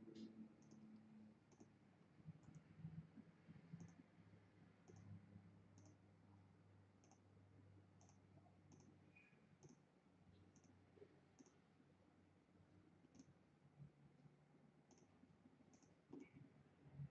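Faint computer mouse button clicks, spaced roughly a second apart, each placing one digitizing point, over a low room hum.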